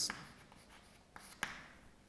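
Chalk writing on a blackboard: faint scratching with a couple of short taps a little after a second in.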